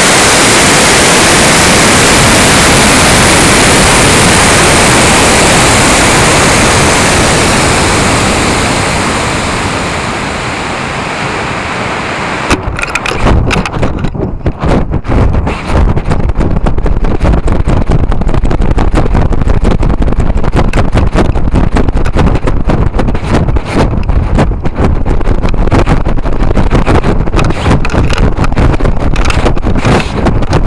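Loud steady rush of a CTI K261 long-burn rocket motor and airflow, heard from a camera aboard the rocket. It fades away over a couple of seconds as the motor burns out and the rocket coasts. From about twelve seconds in, choppy wind buffets the microphone as the rocket turns over near apogee.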